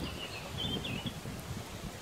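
A few faint, short, high bird chirps in the first second, over a low outdoor rumble.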